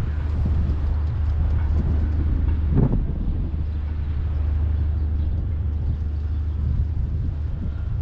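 Steady low drone of a moored trawler's machinery running, with one short knock about three seconds in.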